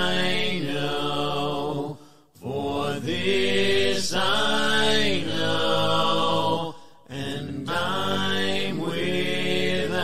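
A cappella hymn singing with no instruments, in sustained phrases with short breaks about two and seven seconds in.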